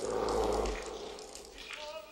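A loud growling roar lasting under a second, with a low rumble beneath it, that fades away.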